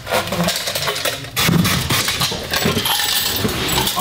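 Irregular small clicks, clinks and knocks of a plastic megaphone being handled and unscrewed with a screwdriver as it is stripped down, hard plastic parts and small metal pieces knocking together.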